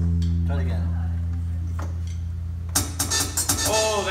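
A low amplified note rings on and slowly fades after the drumming stops. Near the end come a few light hits and the start of voices.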